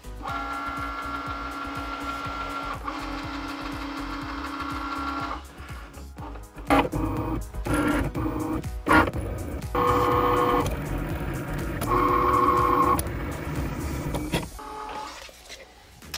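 Cricut cutting machine cutting printable vinyl on its mat: a steady motor whine for about five seconds, then a string of shorter whirring runs broken by clicks as the carriage moves and cuts.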